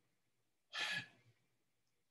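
A man's single short, soft breath about a second in; otherwise near silence.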